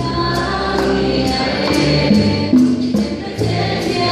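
Live hymn singing amplified through a church sound system: a woman's voice leading with other voices joining, over instrumental accompaniment and a steady percussion beat of sharp, recurring high strikes.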